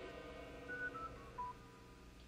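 Four short, faint electronic beeps, each a little lower in pitch than the one before, over a low room hum.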